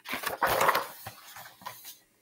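The page of a large picture book being turned: a brief rustle and flap of paper, then a few light handling taps as the book is settled.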